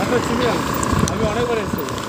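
A voice talking, not clearly made out, over the steady running noise of a moving vehicle with a constant whine.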